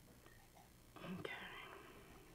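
Near silence with faint room tone, then a softly spoken, almost whispered "Okay" about a second in.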